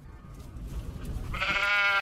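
A sheep bleating, one call starting about one and a half seconds in, over a low rumbling noise.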